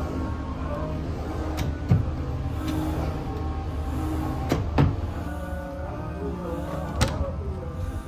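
Background music, with a few sharp knocks of wooden cabinet drawers being opened and shut: one about two seconds in, a quick pair near the middle, and one near the end.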